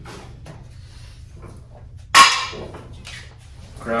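Faint scraping and tapping of a wooden door shim mixing fiberglass body filler with hardener on a piece of cardboard, with one sharp, loud knock about two seconds in that rings briefly.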